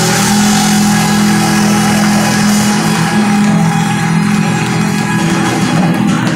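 A live band on stage playing loud, with electric guitars, bass and drums over long held low notes.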